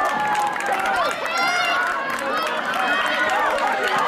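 Many spectators shouting and calling out over one another, cheering on runners, with one high yell about a second and a half in.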